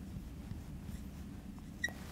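Faint sound of a marker writing on a glass lightboard over a low steady room hum, with a short click near the end.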